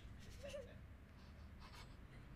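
Near silence: quiet studio room tone with a faint, brief vocal sound about half a second in and faint soft rustling near the end.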